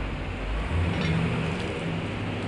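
Street traffic noise: a steady wash of passing vehicles, with a low engine rumble in the first half.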